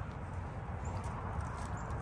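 Footsteps crunching on a gravel path, as a run of short irregular clicks over a steady low rumble.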